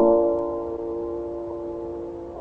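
Piano striking a chord at the start and letting it ring, fading slowly, like the closing chord of a wedding piece. The sound is thin and muffled, typical of an early-1960s tape recording.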